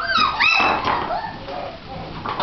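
Shichon (shih tzu–bichon cross) puppy giving a high-pitched whining yelp that bends upward and holds, then a shorter, lower whimper about a second in.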